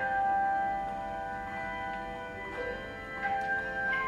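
A handbell choir ringing brass handbells in a slow piece: several pitched bell notes ring and overlap, each sustaining after it is struck, with new notes entering about two and a half and three and a quarter seconds in.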